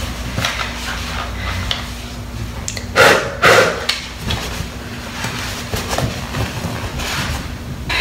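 A towel rubbing over a plastic hair dryer while it is handled, with small knocks and clicks, and one louder rubbing burst about three seconds in.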